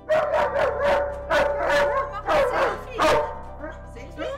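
White Swiss Shepherd dog barking in a quick run of sharp barks for about three seconds, over steady background music.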